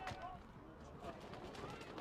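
Faint background ambience of the football ground picked up by the broadcast microphones: a low, even hiss with faint, indistinct distant sounds.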